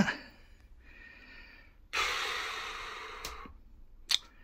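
A man's long sigh: a loud breath out that starts suddenly about halfway through and fades away over a second and a half, after a fainter breath earlier on.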